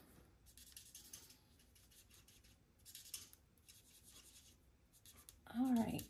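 Faint scratching of a dual-tip marker being stroked across stamped card while colouring in a small image, in a few short runs of strokes.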